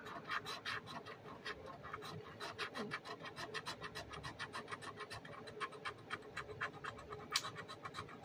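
Scratch-off lottery ticket being scratched, a rapid train of short, faint scraping strokes, about six a second.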